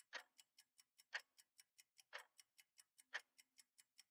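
Faint clock-style ticking, one sharp tick each second, with fainter quick clicks between the ticks, timed to a countdown timer.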